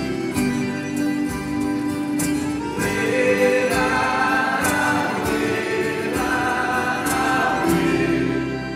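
Live sertanejo-style offertory hymn at a Catholic mass, with instrumental accompaniment. Singing voices come in about three seconds in, and the congregation sings along.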